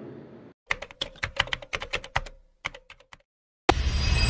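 Keyboard typing sound effect: a quick run of key clicks lasting about a second and a half, a pause, a few more clicks, then a short, louder rush of noise near the end.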